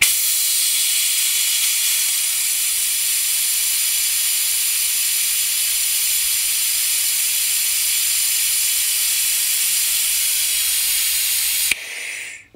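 Trigger-operated, air-powered vacuum bleeder hissing steadily while it sucks old clutch fluid out through the open bleed nipple of the clutch slave cylinder. The hiss stops abruptly just before the end.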